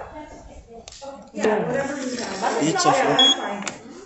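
Voices talking in the background. Near the end there is a short, high electronic beep, fitting a nail-curing LED lamp switching on.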